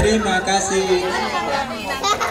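Overlapping chatter of a group of adults and children talking at once, with no single voice standing out.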